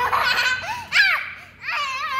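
A young girl laughing: a burst of giggling, then short high arching squeals about a second in.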